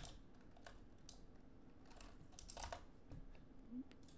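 A few faint, scattered keystrokes on a computer keyboard, typing code at a slow, uneven pace.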